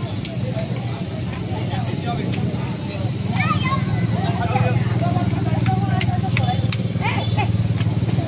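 Crowd of people talking over a steady low mechanical hum that grows louder about three seconds in, with a few sharp clicks near the end.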